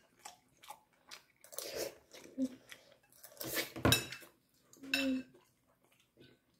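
A person eating noodles with a metal fork: the fork clinks and scrapes on a porcelain plate, the loudest clink ringing briefly about four seconds in, with chewing in between. A short hum comes from the eater about five seconds in.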